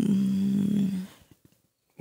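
A person's long, drawn-out vocal drone held at one steady pitch, an odd groan-like noise that the others take for a yawn; it stops about a second in and cuts off suddenly.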